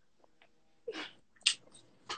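Mostly quiet, with one short spoken word about a second in and a brief, sharp breathy burst just after it.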